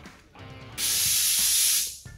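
A loud, steady hiss lasting about a second, starting a little before the middle and cutting off just before the end, over background music.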